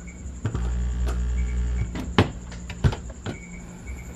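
A 3.5 mm jack being plugged into a V8 sound card's headset slot, with sharp clicks from the plug. A low electrical hum comes in about half a second in and cuts off near two seconds, typical of a jack making partial contact.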